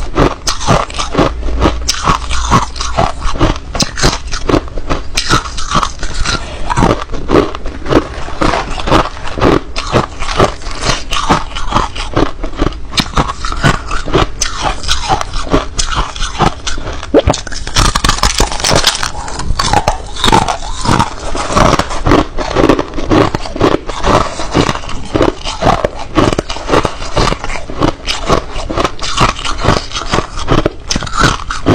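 Crushed ice flakes being bitten and chewed, a rapid, unbroken run of sharp crunches.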